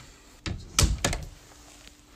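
A white panelled hallway cupboard door being pushed shut, a few quick knocks ending in a thump about a second in.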